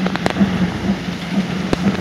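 Many fountain water jets splashing steadily into the basin, with a steady low hum underneath and a few sharp clicks.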